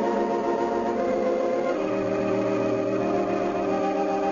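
Organ music playing sustained chords, changing to a new chord with a low bass note about two seconds in.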